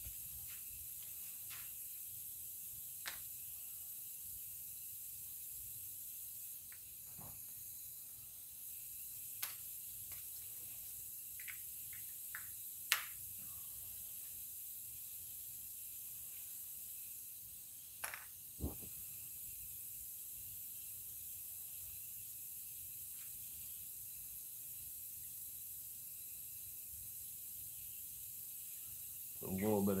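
Faint steady hiss of an airbrush setup, with a few scattered small clicks and knocks as the airbrush is handled and filled with ink.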